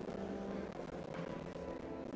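Church organ playing slow, held chords, the chord shifting about halfway through.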